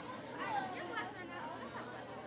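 Chatter of many girls' voices talking at once in pairs and small groups, a steady hubbub of overlapping conversation.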